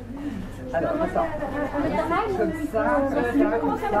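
Several people talking at once: overlapping chatter of women's and men's voices, picking up under a second in.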